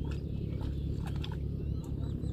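John Deere 5045D tractor's three-cylinder diesel engine idling steadily, stuck in deep mud, with a few short clicks around the middle and a bird chirping near the end.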